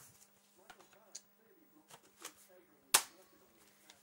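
A single sharp, loud clack about three seconds in, from the spring airsoft gun being handled, amid faint rustling.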